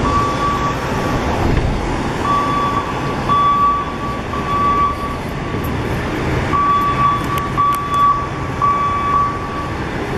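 A truck's back-up alarm beeping, roughly one long single-pitched beep a second, pausing for a moment around the middle before starting again. Steady city street traffic noise runs underneath.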